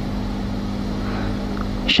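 Steady low background hum with a constant hiss, unchanged through the pause, with a man's voice starting right at the end.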